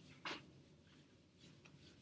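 A whiteboard being wiped with an eraser: faint rubbing and scraping strokes, with one louder swipe about a quarter second in.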